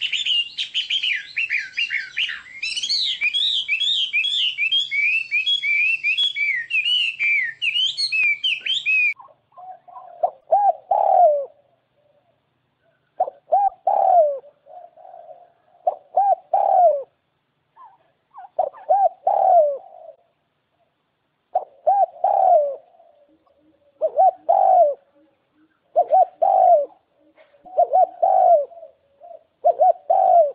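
Birdsong: a fast, high chirping song that stops abruptly about nine seconds in, followed by a lower call repeated about every two seconds.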